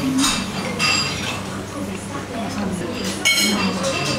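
Metal cutlery clinking against ceramic plates and glassware during a meal, several separate clinks with a short ring, the loudest about three seconds in.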